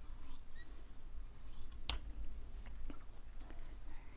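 Fabric shears snipping through a thin linen handkerchief, quiet snips and fabric rustle, with one sharper click about halfway through.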